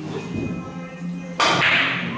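Carom billiard balls colliding after a cue stroke: a sharp crack about a second and a half in, the loudest sound, with a short ringing tail.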